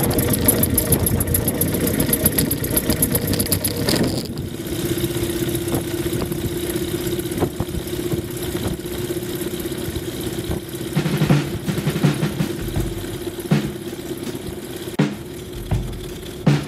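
Tecnam ultralight aircraft's piston engine and propeller running on the ground. The engine settles from a busier, louder note to a steadier, lower idle about four seconds in, with a few short knocks later on.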